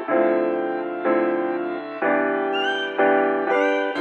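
Background music: piano chords struck about once a second, each one held and fading before the next.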